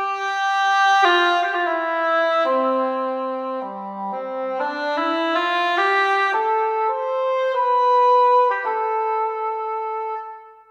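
Sampled legato oboe from Vienna Symphonic Library's Vienna Ensemble Pro instruments playing a slow solo melody, the notes joined smoothly one into the next. The line steps down to its lowest note about four seconds in, climbs back up, and ends on a long held note.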